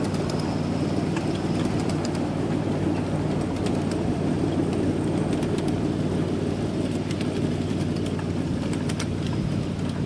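7.5-inch scale ride-on miniature train running along its track: a steady low drone with scattered faint clicks.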